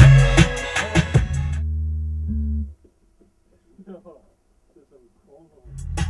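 A hip-hop beat with drum hits and a heavy bass line. About a second and a half in the drums drop out and a low bass note is held for about a second. Then the music stops, leaving a faint voice, and the beat comes back in just before the end.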